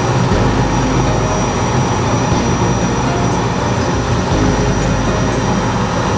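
Steady rumbling rush of noise inside a DG-300 glider's cockpit on an aerotow takeoff roll: the main wheel running over the snow runway and the air rushing past, with the tow plane's engine ahead.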